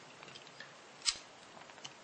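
A single sharp click about a second in, among a few faint ticks, from light handling of cards or the bill.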